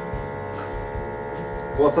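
TintonLife household vacuum sealer's pump running with a steady hum, drawing the air out of the bag before the seal.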